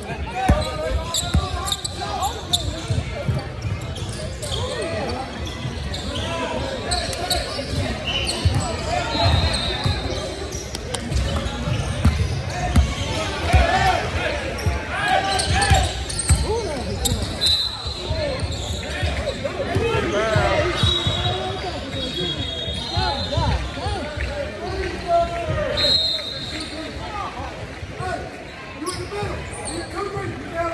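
Basketball game in a gym: a ball bouncing on a hardwood court and sneakers squeaking briefly several times, under indistinct voices in a large echoing hall.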